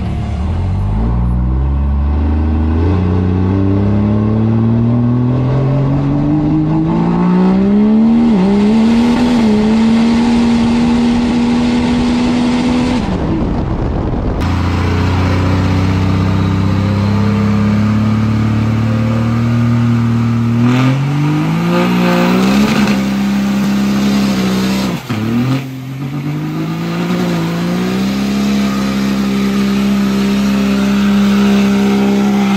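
Built diesel Cummins engine in a lifted Dodge Ram 2500 pulling hard, its pitch climbing steadily with small dips through the first half. About halfway through, the sound cuts to the engine held at steady high revs for a burnout, surging up twice near the end.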